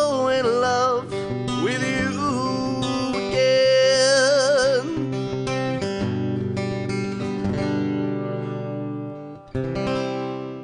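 A man singing long held notes with vibrato over a strummed acoustic guitar as the song ends; the voice stops about five seconds in and the guitar strums on alone, breaks off briefly near the end, then one last strum rings out.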